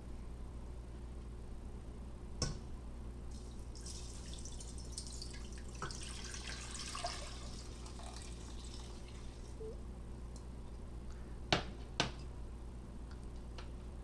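Water poured from a glass measuring cup into a stainless steel skillet of dry TVP granules, a steady splashing pour lasting about six seconds. A knock comes before the pour and two sharp clicks near the end.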